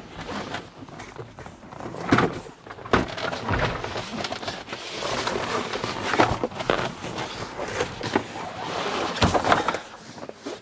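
Rummaging and scraping under a car seat as a heavy plastic socket-set case is worked loose and pulled out, with scattered knocks and clunks of the case against the seat frame and floor.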